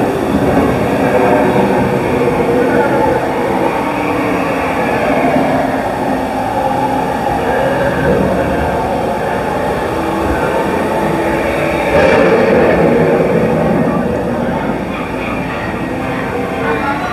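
Steady, loud rushing and rumbling echoing through the dark ride tunnel of a boat water ride, with indistinct voices mixed in. It swells suddenly louder about twelve seconds in.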